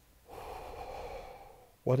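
A man's deep, audible breath lasting about a second, picked up close by a microphone, with a spoken word starting near the end.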